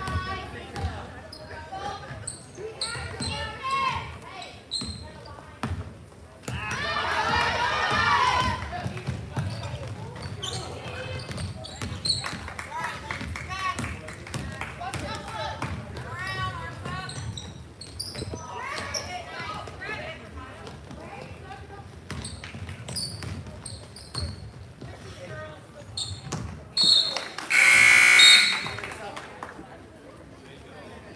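Basketball game sounds in a gym: the ball dribbling and bouncing on the hardwood court, sneakers squeaking and voices calling out, all echoing in the hall. Near the end a referee's whistle stops play, a short toot and then a louder blast about a second long.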